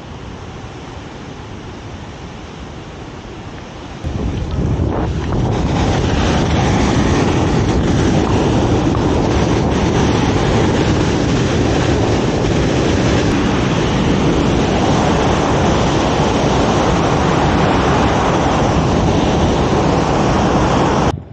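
Water rushing through the dam's bell-mouth spillway into its outlet channel: a steady rush of noise that jumps much louder about four seconds in, mixed with wind buffeting the microphone.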